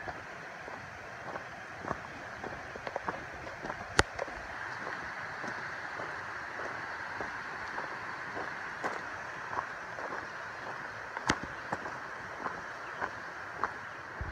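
A hiker's footsteps crunching and scuffing on a dirt trail strewn with leaves and twigs, in an irregular walking rhythm, with a couple of sharper clicks about four seconds in and again later. A steady rushing hiss lies underneath.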